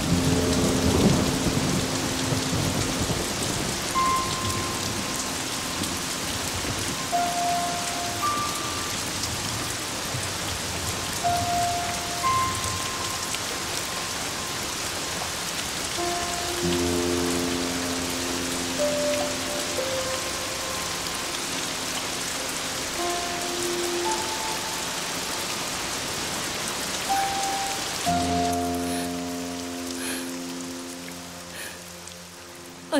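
Heavy rain pouring steadily, with a rumble of thunder in the first couple of seconds. A slow film score plays under it: single held notes, with sustained low chords coming in about halfway and again near the end.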